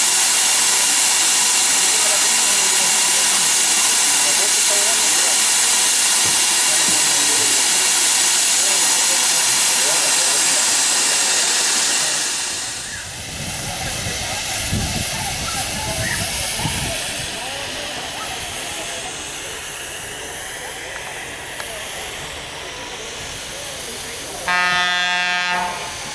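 A steam locomotive hissing loudly and steadily with escaping steam, the hiss dropping away about halfway through to a quieter, rumbling background. Near the end, a short horn blast: a single steady note lasting about a second.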